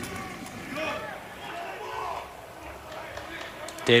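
Faint, distant voices over the low open-air ambience of a football stadium, with no close-up voice until the very end.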